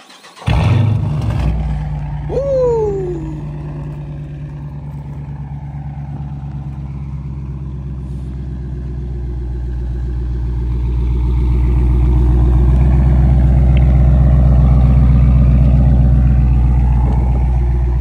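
Straight-piped 5.7-litre Hemi V8 of a Dodge Challenger R/T on a warm start. It fires about half a second in with a short flare and a brief falling tone, then settles into a steady, loud idle that grows louder about ten seconds in.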